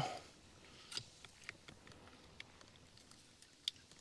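Faint handling noise of plastic and wiring: a few light, scattered clicks and rustles as a gauge and its connector are pushed into an A-pillar gauge pod, with the clearest clicks about a second in and near the end.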